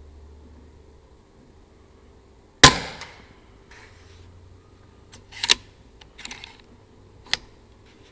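Daystate Alpha Wolf 5.5 mm PCP air rifle firing a single shot about two and a half seconds in: a sharp crack that dies away quickly. It is followed by a few shorter clacks and one sharp click.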